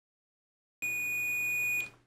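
DT830L digital multimeter's continuity buzzer giving one steady high-pitched beep of about a second, starting a little before halfway. The probes touched to both ends of an alligator clip lead find a complete conductive path, so the lead is good.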